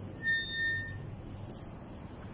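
A metal gate squeaking once: a short, steady, high-pitched squeal starting about a quarter second in and lasting under a second.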